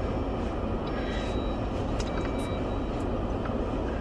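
Steady low rumble and hiss inside a stationary Jeep's cabin, its engine idling.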